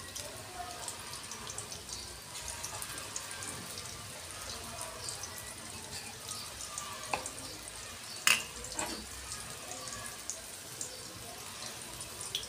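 Moong dal fritters frying in shallow oil in a steel kadhai: a steady bubbling sizzle with small crackles. There is one sharp click about eight seconds in.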